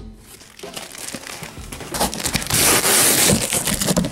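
Cardboard box being handled and opened by hand: scraping and crinkling of cardboard, building to a loud rustle about two and a half seconds in.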